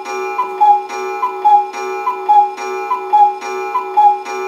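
Cartoon clock ticking sound effect: a pitched tick-tock, a higher note then a lower one, about five pairs in four seconds, over a steady sustained tone.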